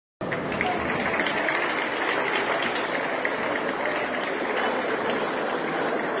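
A crowd applauding steadily.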